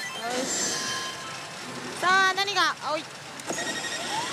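Electronic sound effects from a Daito Giken Hihouden pachislot machine over the steady din of the parlor, with a loud sweeping voice-like cry from the machine about two seconds in.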